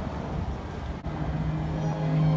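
City street traffic: a low rumble of passing cars, with a steady low hum setting in about halfway through.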